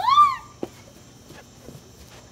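A person's short high cry that rises and falls in pitch over about half a second, the loudest thing here, followed by a single sharp knock.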